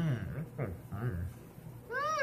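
A man's low voice making short sounds in the first second, then near the end a single cat meow that rises and then falls in pitch.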